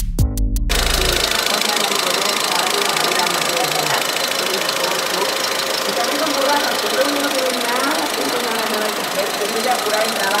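Volkswagen Gol engine idling steadily, heard close in the open engine bay, with voices talking in the background. Electronic music cuts off within the first second.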